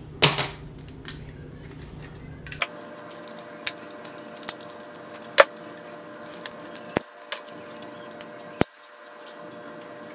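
Metal snips cutting through the hard clear plastic packaging of a gold bar: a run of separate sharp clicks and snaps, the loudest just after the start and again about five seconds in.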